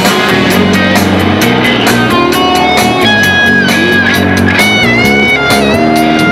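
Amplified electric guitar playing loud lead lines: quick picked notes with sustained notes and several bent notes in the second half.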